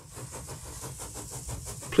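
Steam engine running: a quick, even beat over a steady hiss, fading in and building.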